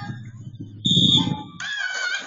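A short, shrill starting whistle about a second in, followed by spectators and children starting to shout and cheer as the swimmers set off.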